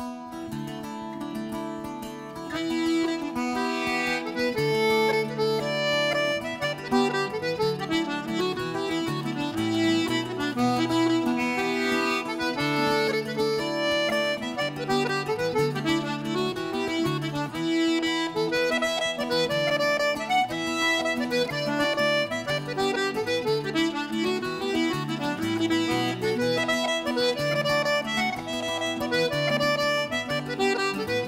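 Traditional Irish dance tune played on a button accordion, a brisk run of quick melody notes over guitar chords, filling out and growing louder about two and a half seconds in.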